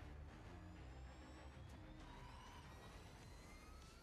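Faint whine of a Formula E car's electric motor over a low steady hum, several thin tones rising slowly in pitch through the second half as it speeds up.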